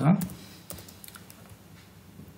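Computer keyboard typing: a few faint, separate keystrokes as a class name is typed and corrected.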